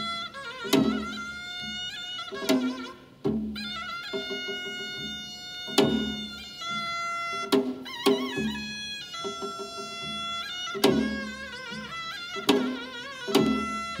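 Taepyeongso, the Korean double-reed shawm, played back as a recording or sample: long, nasal, held notes with wavering pitch, over a struck beat about every one and a half to two seconds.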